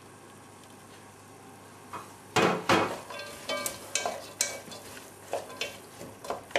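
Chopped carrots and onions sizzling faintly in oil in a pot. About two and a half seconds in come two loud knocks, then a wooden spoon stirs the vegetables with a run of small scrapes and clacks against the pot.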